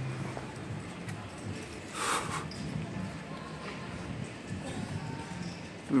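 Street ambience with faint voices of passers-by and a short noisy swish about two seconds in.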